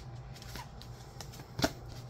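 A deck of tarot cards being cut and handled by hand: a few soft card clicks, and one sharper snap of cards about a second and a half in.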